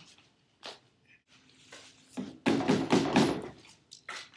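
A few faint taps, then a loud clattering knock and rattle lasting about a second, starting just past halfway through.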